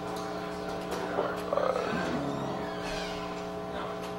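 Steady hum made of several held tones, with a faint, brief voice in the middle.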